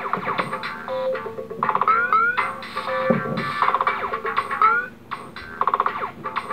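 Electronic music loops played back by an interactive LEGO band stage, each loop triggered by the RFID chip in a minifigure placed over a sensor. Several repeating parts are layered, with rising pitch slides about two seconds and four and a half seconds in.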